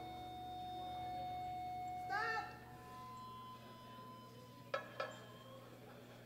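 Loaded barbell lifted out of the bench-press rack hooks: two sharp metallic knocks about a third of a second apart near the end, over a quiet hall with faint steady tones and a brief voice about two seconds in.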